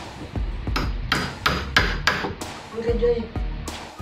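Hammer striking the handle of a wood chisel in a series of sharp taps, about three a second, as the chisel pares a little wood from the door edge so that the deadbolt will fit its hole.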